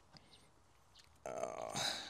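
Near silence, then about a second in a short throaty vocal sound from a man, lasting under a second.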